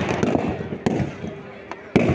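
Firecrackers packed inside a burning Ravana effigy going off. A sharp crack comes a little under a second in and a louder one near the end, among smaller pops.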